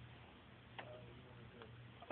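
Near silence: room tone with a faint low hum and one soft click a little under a second in.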